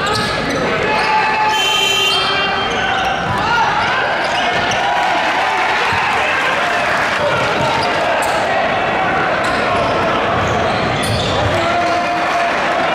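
Live gym sound from a high school basketball game: crowd voices and shouts with a basketball bouncing on the hardwood court. A brief high squeak about two seconds in.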